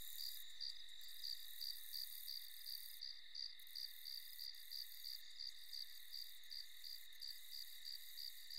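Night ambience of crickets: faint, even chirping at about three chirps a second over a continuous high trill.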